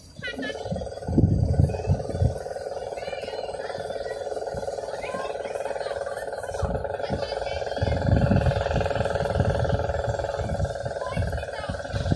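A steady droning hum sets in just after the start and holds at an even pitch, with bursts of low rumble underneath.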